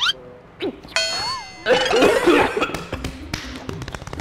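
A bell-like ding starts abruptly about a second in and rings for under a second, followed by a harsh, noisy burst lasting about a second.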